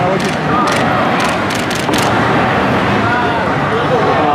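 Indistinct voices and crowd noise, steady throughout, with about six sharp clicks in the first two seconds.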